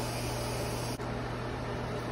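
A steady hiss with an even low hum, the sound of a fan or similar small machine running; it drops out for an instant about a second in.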